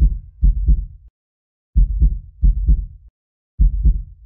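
Heartbeat sound effect: loud, deep double thumps, each beat a lub-dub pair, coming in groups of two, then two, then one, with short pauses between the groups.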